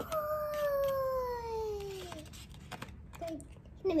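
A child's drawn-out playful vocal sound, a sung "doi" held for about two seconds that rises a little and then glides slowly down in pitch before trailing off.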